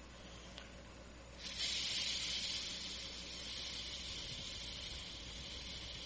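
A person breathing out in a long, steady hissed 'sss' as a breath-control exercise, pushing the air out in one even stream. The hiss starts about a second and a half in and slowly fades as the breath runs out.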